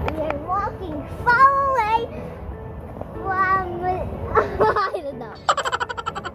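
A young child's high voice calling out in sliding, sing-song cries and giggling in quick bursts near the end, over background music.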